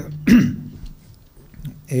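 A man clears his throat once, loudly and briefly, about a third of a second in. He then starts to speak near the end.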